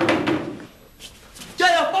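A sudden thud, like a blow or slam, at the start that dies away within about half a second, followed near the end by a man's startled shout.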